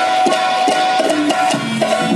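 Live Indian folk dance music: hand drums beat a quick, steady rhythm under a held melody line.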